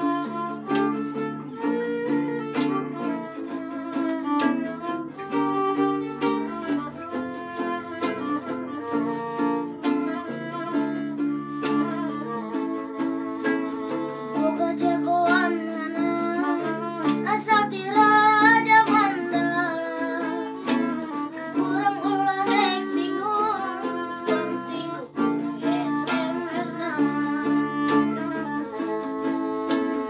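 A small acoustic ensemble playing a dangdut tune: acoustic bass guitar and acoustic guitar keep the accompaniment while a violin carries the melody with vibrato. The wavering melody line is strongest around the middle and again near the end.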